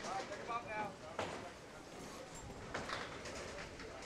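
Candlepin bowling alley sounds: faint voices in the hall, then two sharp knocks from the lanes about a second and a half apart, one about a second in and one near three seconds.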